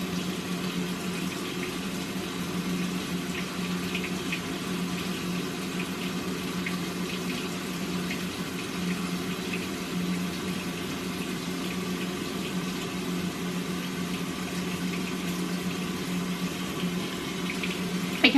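Steady running-water noise with a constant low hum underneath, unchanging throughout.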